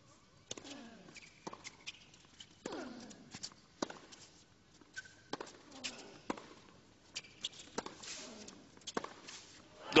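Tennis rally on a hard court: sharp racket-on-ball strikes about once a second, several with a short falling grunt from the player, over a hushed stadium crowd. Right at the end the crowd breaks into loud cheering as the point is won.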